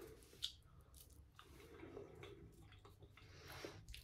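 Near silence: faint mouth sounds of someone tasting a spoonful of raspberry jelly, with one small click about half a second in.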